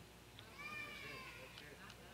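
A faint, high-pitched voice sounding once for about a second, starting about half a second in, its pitch rising slightly and then falling.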